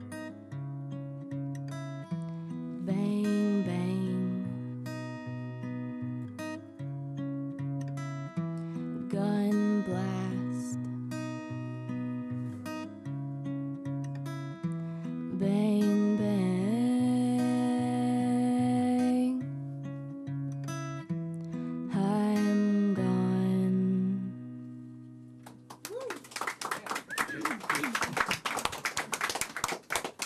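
Fingerpicked acoustic guitar with a repeating alternating bass pattern under a woman's long sung notes, closing out a song about 25 seconds in. Applause follows in the last few seconds.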